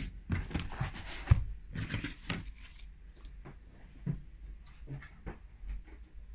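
Craft foam sheet being handled on a cutting mat: irregular rustles, light taps and clicks, busier in the first half and sparser after.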